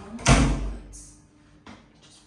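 A door shutting with a sharp thud about a quarter second in, the sound dying away within half a second, followed by a faint click near the end.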